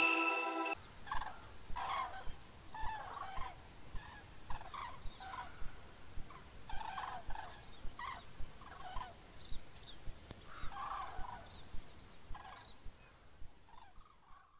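A flock of cranes calling: many short, rough calls in quick, irregular succession, fading out near the end. Under a second in, a held music chord cuts off.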